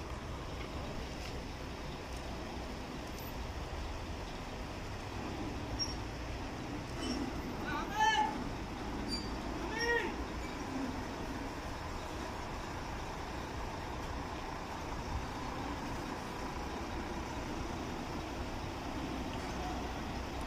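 Steady outdoor background noise, broken about eight and ten seconds in by two short, high calls that rise and fall in pitch.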